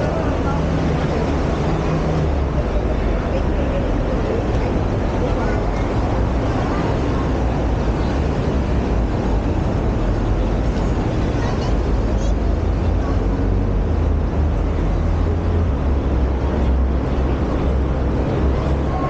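Steady road traffic rumble, mixed with the chatter of passing pedestrians.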